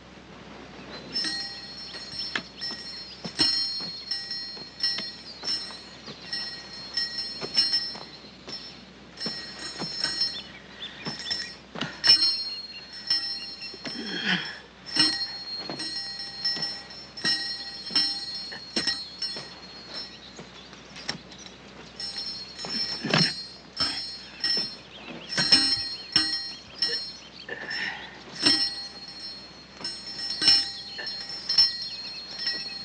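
Small metal bells jingling in short repeated strokes, roughly one every second or so, each ringing the same cluster of high tones. A few lower, louder sounds stand out among them, about halfway through and again later.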